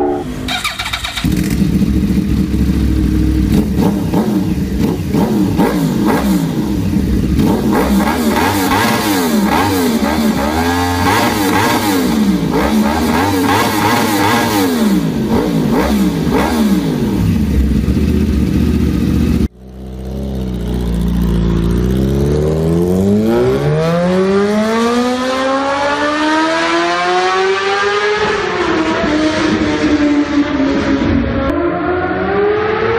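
Motorcycle engines revving, with many overlapping rises and falls in pitch. After a sudden cut about two-thirds of the way through, a single motorcycle engine accelerates, its pitch climbing steadily for several seconds and then dipping slightly near the end.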